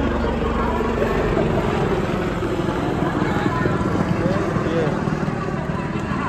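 Helicopter flying overhead, a steady rotor noise with a rapid low pulse, with a crowd chattering underneath.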